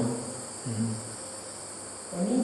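Steady high-pitched chirring of insects, with a faint, brief low murmur of a voice about half a second in.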